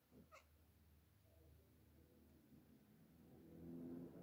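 Near silence: room tone, with one brief, faint, high-pitched call rising in pitch just after the start. A faint low sound with a steady pitch grows louder near the end.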